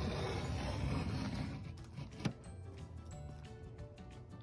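Background music, with a utility knife scratching in short strokes as it scores a sheet of cement backer board, and one sharp click a little past two seconds in.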